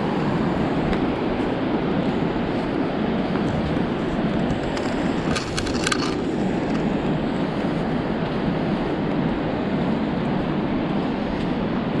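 Wind buffeting the camera microphone: a steady rumbling rush. About five and a half seconds in comes a brief clattering rattle.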